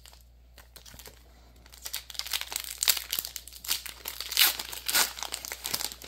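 Foil wrapper of a Pokémon 151 booster pack crinkling as it is torn open and the cards slid out. It starts about two seconds in and goes on for a few seconds in quick crackles.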